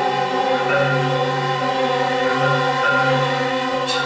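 Live music for violin and electronics: a sustained electronic chord with held violin notes over it, and a low tone beneath swelling and fading about once a second. Struck marimba notes come in right at the end.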